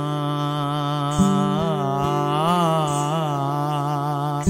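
A man's voice holds one long sung note of an Urdu ghazal, wavering in ornamental turns through the middle, over a sustained acoustic guitar chord. There is a fresh guitar strum about a second in.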